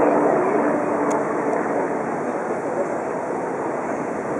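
Steady rushing of the Bellagio fountain's water and spray falling back onto the lake.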